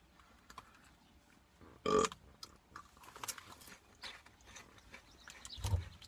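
A person chewing a crunchy protein tortilla chip: faint, uneven crisp crackles, with a short grunt ("ugh") about two seconds in and a low thump just before the end.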